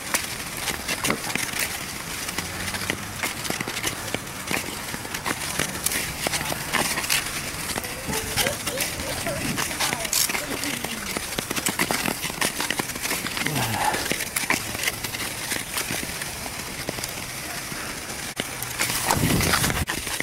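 Nordic skate blades scraping and gliding over snow-dusted ice, a continuous crackling scrape with many small clicks.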